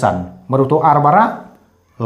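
A man's voice: one drawn-out utterance of about a second that bends up and down in pitch.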